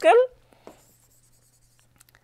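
Faint scratching of a stylus on a tablet screen as handwritten text is erased, over a low steady hum.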